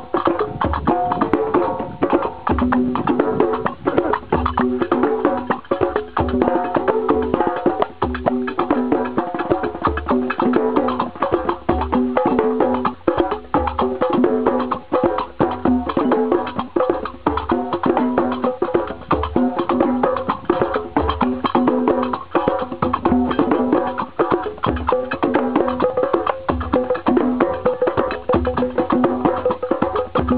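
Several hand drums played together with bare hands in a fast, steady rhythm: small skin-headed drums and a djembe. Deep low strokes fall regularly under dense, sharper slaps and taps.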